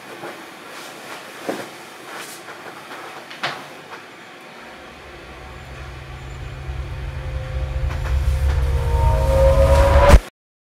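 A deep rumble that begins about halfway through and swells steadily louder, with held tones joining on top near the end, then cuts off suddenly. Before it, a low hiss broken by a few sharp clicks.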